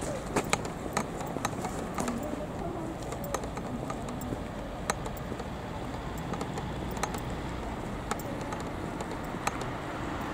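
Outdoor street ambience: a steady low rumble with irregular sharp clicks and taps scattered throughout, and faint voices.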